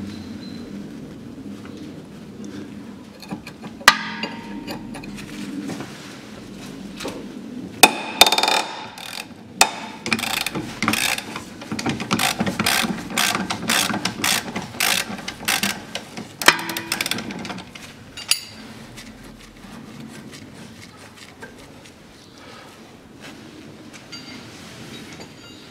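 Ratchet wrench clicking as it undoes a 17 mm bolt on a car's rear suspension trailing arm while the nut is held with a spanner. There are a few sharp metal clinks early on, then a long run of rapid clicking through the middle.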